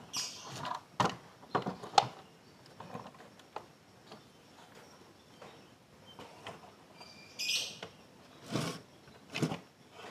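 Scattered light metal clicks and knocks as parts are handled and fitted into an aluminium motorcycle crankcase half, with a brief higher-pitched rattle about seven and a half seconds in.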